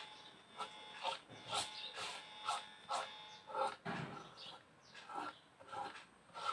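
Flat paintbrush scraping thick paint across paper in short, quick strokes, about two a second.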